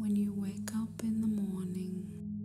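A whispered voice over a steady, low drone of ambient meditation music with singing-bowl tones.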